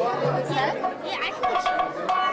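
Many people talking at once: overlapping crowd chatter in which no single voice stands out.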